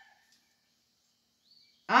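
Mostly near silence: the faint tail of a distant rooster crow fades out at the start, and a woman's speech begins just before the end.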